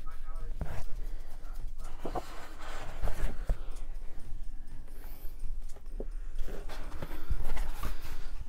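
Thick cardstock pages of a prop book being turned and handled: soft paper rustling with a few scattered taps and knocks.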